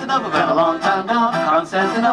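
Live acoustic song: men singing into microphones, with a strummed acoustic guitar and an accordion accompanying.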